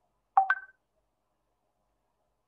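A short two-note rising electronic tone, a lower note then a higher one, lasting under half a second: a notification chime from the video-call software.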